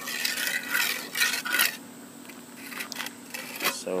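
Steel mason's trowel scraping and smoothing wet concrete on top of a filled cinder block: several short, quick strokes in the first two seconds, then quieter with a few faint clicks.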